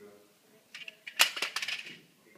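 A quick cluster of sharp clicks and clinks very close to the microphone, loudest a little over a second in.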